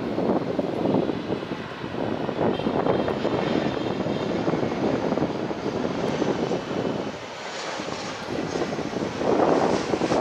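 Airbus A321-211's CFM56 jet engines rumbling as the airliner passes low on approach, with a faint whine over the rough noise. The sound dips about seven seconds in, then swells again near the end.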